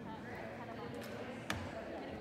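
Murmur of player and spectator chatter in a gym, with one sharp smack of a volleyball being hit about one and a half seconds in.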